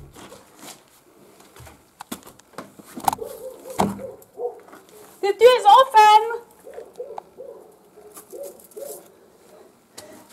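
Knocks, bumps and scuffs of someone clambering in through a window, with a short vocal exclamation about five seconds in, followed by a run of soft, low, repeated hums.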